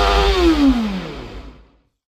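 Motorcycle engine rev sound effect: the pitch climbs and then drops back in one long blip over a low rumble, fading out near the end.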